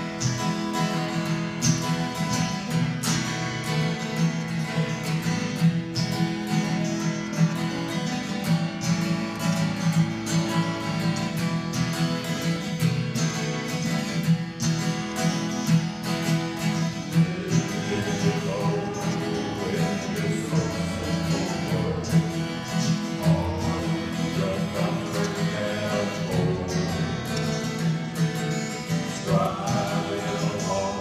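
Two acoustic guitars playing a strummed accompaniment with a steady beat. A singing voice comes in a little past halfway and carries on over the guitars.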